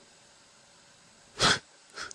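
Near silence broken once, about a second and a half in, by a man's single short, sharp exhale of breath.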